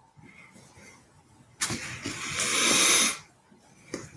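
A sudden rush of hissing noise over a video-call microphone, starting about a second and a half in, swelling once more, and stopping after about a second and a half.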